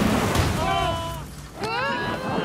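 A car blowing up: a loud burst with a low rumble that fades away over about a second. A person's voice cries out over it, and again near the end.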